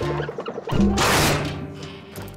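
A loud cartoon crash sound effect about three-quarters of a second in, fading over the next second, over background music.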